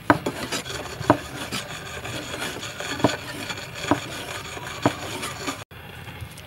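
Chinese cleaver slicing raw beef on a thick wooden chopping board: five sharper knocks of the blade on the wood at uneven intervals, among lighter cutting and scraping sounds.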